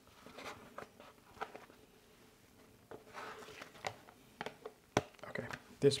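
Soft scraping and rustling of a plastic scraper working soft mascarpone cheese off a cloth, with a sharp click about five seconds in.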